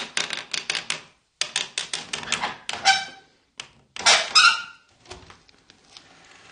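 Rapid knocking on a wooden lattice door with a gloved hand, several quick knocks a second in three bursts with short pauses between them, and a few weaker knocks near the end.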